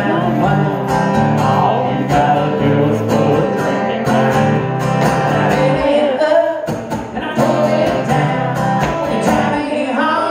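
A man singing into a microphone while strumming his guitar, a live solo song with a short break in the vocal a little past the middle.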